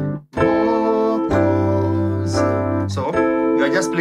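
Piano playing slow, held chords of a hymn accompaniment, a new chord struck about every second. It moves from a C add-nine chord over G in the bass to an inverted A minor chord (C-E-A) near the end.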